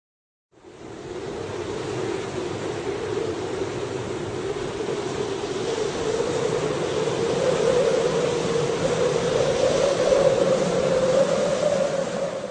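Wind sound effect: a steady rushing noise that fades in about half a second in, builds slowly, and rises a little in pitch toward the end.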